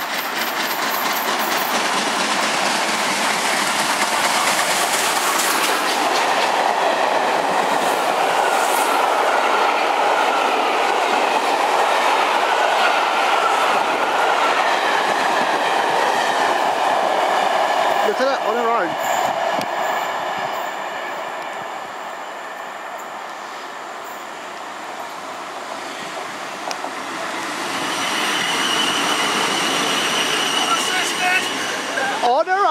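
Bulleid Battle of Britain class steam locomotive 34067 Tangmere passing through at speed with the regulator open, working hard, followed by its coaches clattering over the rail joints. The sound is loudest for the first two-thirds, eases off, then swells again near the end with a steady high whine.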